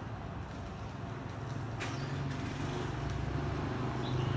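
A low, steady motor hum that grows louder from about a second in, with one sharp click near the middle.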